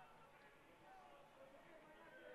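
Near silence: faint background ambience in a pause of the race commentary.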